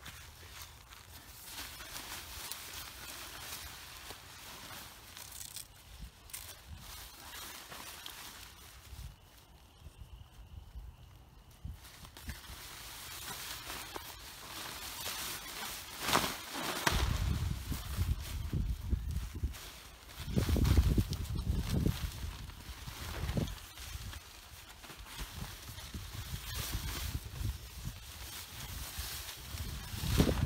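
Rustling and crinkling of the Marmot Tungsten UL 1P tent's fabric as it is handled, lifted and gathered up while being taken down, loudest in a few sharp handling bursts. From about halfway on, low rumbling bursts join in.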